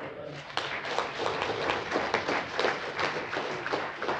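Audience applauding: a dense, irregular patter of hand claps.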